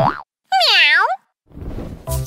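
Cartoon transition sound effects: a quick rising swoosh, then a springy boing whose pitch dips and swings back up over about half a second.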